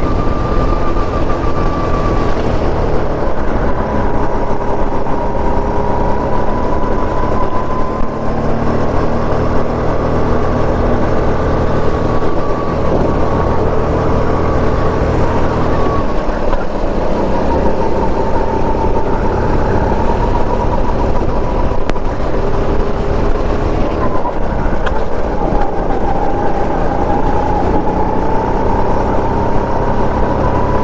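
Go-kart engine running hard from the driver's seat, its pitch slowly rising and falling as the throttle is worked through corners and straights.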